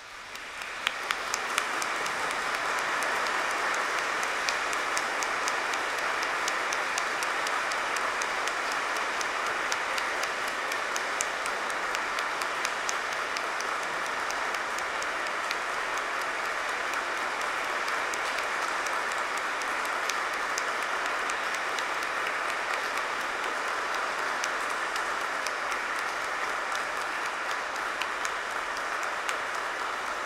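A large congregation applauding: dense, steady applause that swells up over the first couple of seconds and then holds.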